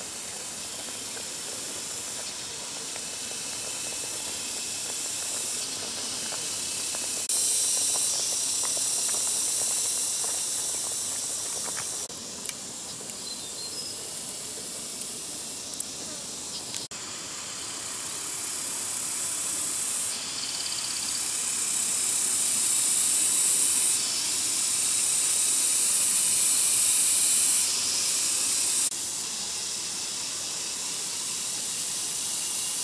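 Water boiling hard in a metal basin over a wood fire, heard as a steady high hiss with forest insects mixed in. The hiss jumps in level several times. A few light crackles come from the fire about halfway through.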